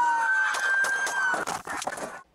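Car tyres screeching under hard wheelspin: a loud, sustained squeal with a second tone sliding downward, which cuts off about one and a half seconds in. A few sharp knocks follow near the end.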